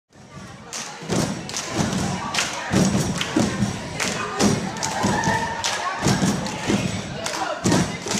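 Rhythmic thumping, about two to three beats a second, mixed with voices.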